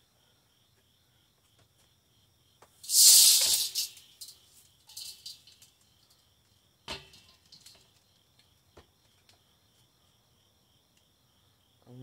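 Plastic food-dehydrator trays being lifted off and handled. A loud rattling scrape comes about three seconds in, then lighter plastic clicks and knocks.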